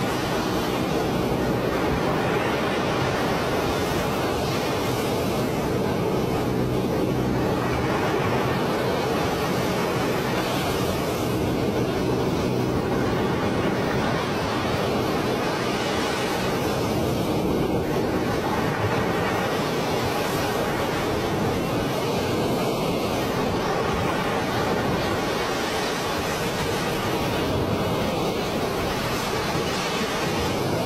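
Heavy water rushing steadily as floodwater pours from open dam spillway gates into the river below.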